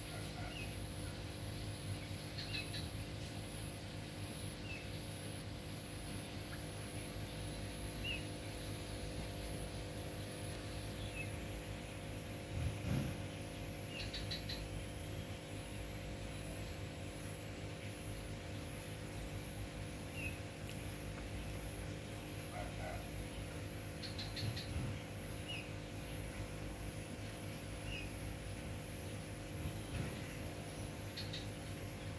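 Outdoor background sound: short high chirps recurring every couple of seconds over a steady low hum and a faint high whine, with two soft thumps, one about halfway through and one near the end.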